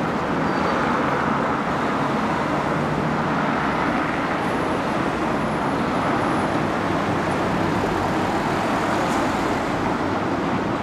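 Steady road traffic noise of a busy city street: cars driving past in a continuous, even wash of sound.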